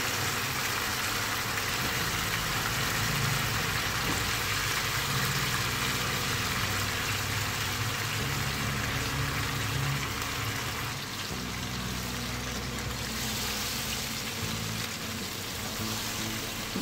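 Spiced yogurt masala sizzling and bubbling steadily in a non-stick frying pan on a gas burner, with fried moong dal fritters (mangochiyan) sitting in it. A low hum runs underneath.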